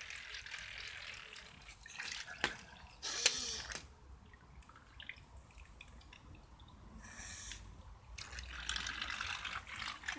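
Faint trickling and small splashes of paddling-pool water stirred by small toy boats under way, with a few light clicks and two short rushes of hiss, about three seconds in and again about seven seconds in.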